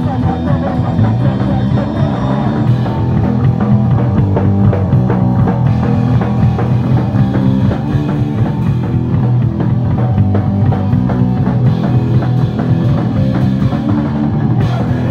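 Live punk rock band playing a song: electric guitars and a drum kit at a steady beat.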